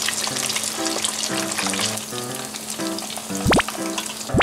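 Breaded giant shrimp deep-frying in hot oil with a steady, dense sizzle, and a brief whistle-like sweep near the end.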